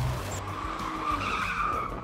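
Tyres of a V6 Ford Mustang squealing as the car slides sideways in a drift, a wavering squeal lasting most of two seconds.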